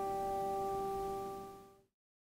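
The last note of a song's instrumental accompaniment ringing on steadily after the singing has stopped, then fading out to silence near the end.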